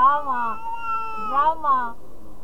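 A baby fussing: two drawn-out, meow-like cries, each rising and then falling in pitch, the second about a second and a half in.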